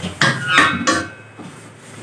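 A long metal spoon knocking and scraping against a large metal cooking pot of biryani as the rice is turned, a few clanks in the first second and a half.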